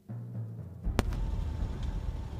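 Background music ending at the start. Under a second in, a steady low rumble of motorcycle riding noise, engine and wind, takes over, with a single sharp click about a second in.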